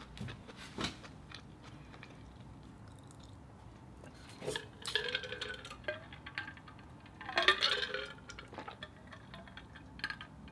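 Drinking from an insulated metal water bottle: after a quiet stretch, short gurgling glugs and gulps begin about halfway through, the loudest a couple of seconds later. A single faint click comes just under a second in.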